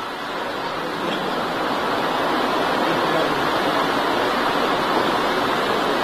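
A steady rushing noise with no pitch to it, swelling a little over the first second and then holding level.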